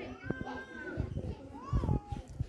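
High-pitched voices calling out in two drawn-out calls, the second falling in pitch near the end, over low bumps and rumbles.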